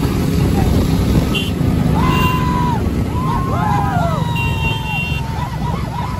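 A pack of motorcycles riding in a group, engines and wind giving a loud, steady low rumble, with riders whooping and shouting over it. A few short high beeps sound in the middle.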